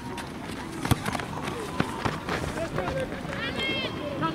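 Field sound of an amateur football match: players and onlookers shouting and calling, with a ball kicked with a sharp thud about a second in and another knock near two seconds. A high shout rises and falls near the end.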